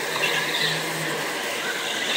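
Several go-karts driving past close by on an indoor kart track: a steady whir of kart motors and tyres.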